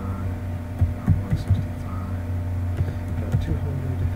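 Computer keyboard being typed on: a quick run of separate keystrokes, a pause, then a few more, over a steady low electrical hum.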